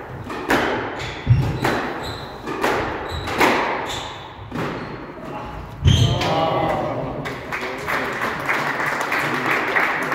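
Squash ball being struck by rackets and hitting the court walls in a rally, a sharp echoing crack about every second. About six seconds in a heavier thud, then spectators' voices and noise fill the hall.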